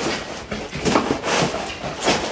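Sheets of paper rustling and shuffling as they are handled inside a cardboard box.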